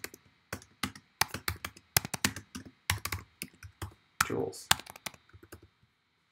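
Typing on a computer keyboard: a run of irregular keystrokes that stops about half a second before the end.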